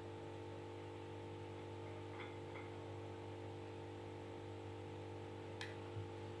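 A steady hum, with a few faint clicks of a metal spoon against a ceramic plate as green chili paste is spooned onto it, the sharpest click near the end.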